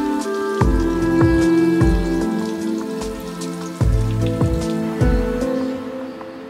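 Water splashing steadily from bamboo spouts into a shrine's stone purification basin, under gentle instrumental background music with struck, ringing notes. The water sound drops away near the end, leaving only the music.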